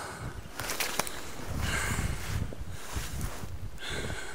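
A man breathing hard close to the microphone, two heavy breaths about two seconds apart, over rustling of coat fabric and handling noise, with a few sharp clicks about a second in.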